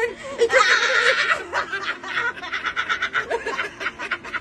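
A man and a woman laughing hard: a loud, high burst of laughter about half a second in, then quick rhythmic pulses of laughter.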